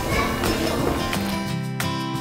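Background music with steady held notes that change pitch a couple of times.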